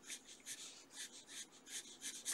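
Pencil shading on sketchbook paper: faint, quick back-and-forth scratching strokes, about five a second, laying in tone.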